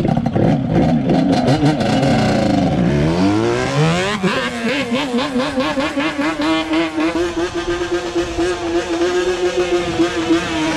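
Yamaha Banshee's twin-cylinder two-stroke engine revving hard as the quad pulls away. The pitch falls over the first few seconds, climbs in repeated sweeps around three to four seconds in, then holds a steady high note. It runs cleanly without bogging.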